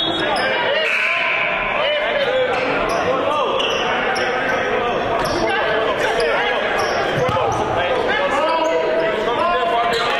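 Basketball game ambience in a gymnasium: many voices of players and spectators talking and calling over one another, with a basketball bouncing on the hardwood court.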